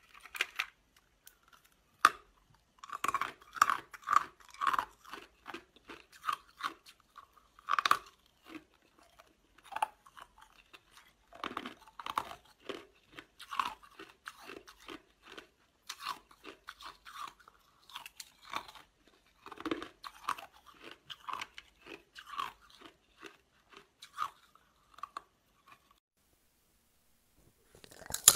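Close-miked biting and crunching of frozen coloured ice pieces in the mouth. Irregular crunches and sharp cracks, with short gaps between bites.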